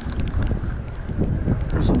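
Wind buffeting the camera microphone, a gusty low rush, with a man's voice coming in near the end.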